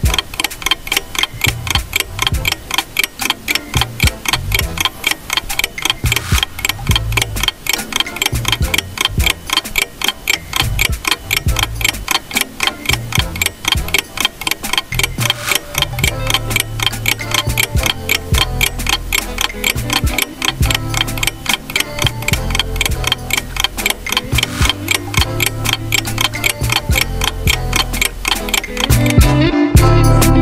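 Ticking-clock countdown sound effect: a steady, rapid, even ticking, with low pulses underneath.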